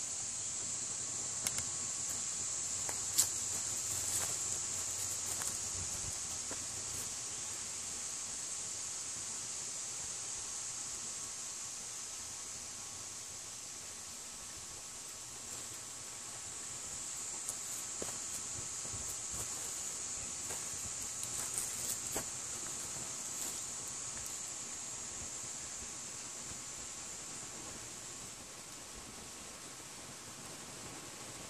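Steady high-pitched insect chorus, swelling and easing slowly, with a few faint clicks.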